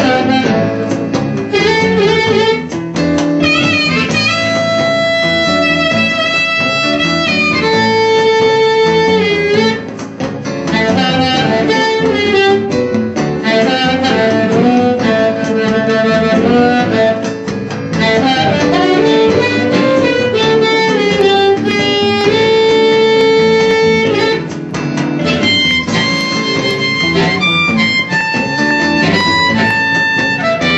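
Amplified harmonica played in third position on a G harp through a Turner 254 bullet-style harp microphone and an amp: phrases of long held notes with bent pitches, separated by brief pauses.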